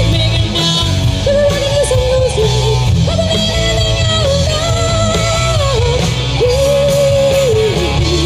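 Live rock band playing loudly: electric guitar, bass and drums, with a lead melody line of held notes that slide between pitches over the steady low end.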